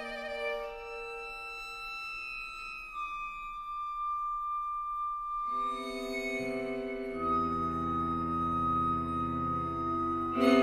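Contemporary chamber music for flute and string trio (flute, violin, viola, cello) in long held notes. A single high sustained tone carries the thin first half, then a fuller held chord comes in past the middle, with low cello notes joining under it.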